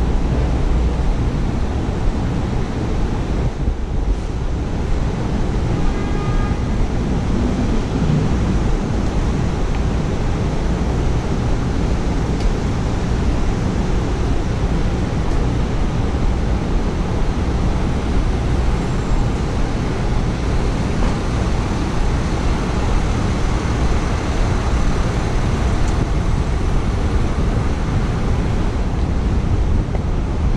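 Steady city street ambience: a continuous low roar of traffic mixed with wind noise on the microphone. A brief faint high tone sounds about six seconds in.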